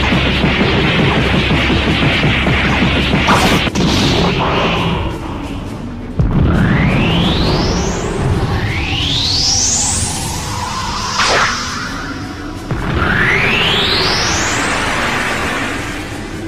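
Anime battle sound effects over music: a dense blast roar with sharp impacts a little after three and near four seconds in, then three rising whooshing sweeps, at about six, eight and a half and thirteen seconds in, with a sharp crack between the last two.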